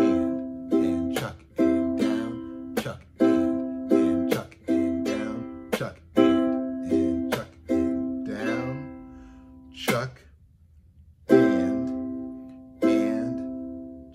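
Ukulele played in the calypso (island) strum: ringing down and up chord strums alternating with sharp, dead 'chuck' hits where the strumming palm stops the strings on beats two and four. About ten seconds in the playing breaks off after a lone chuck, then resumes.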